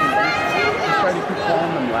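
Several people's voices calling out and chattering over one another in a large arena hall, with no single speaker standing out.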